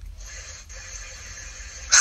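Pause in a recorded phone call: only a faint, steady hiss of line noise with a low hum underneath.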